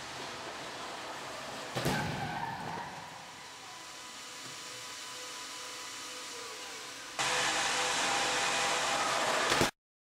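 A side-impact crash: a sudden loud hit about two seconds in as the moving barrier strikes the side of a 2008 Jeep Liberty, dying away over about a second. A louder steady hiss follows from about seven seconds in and cuts off abruptly just before the end.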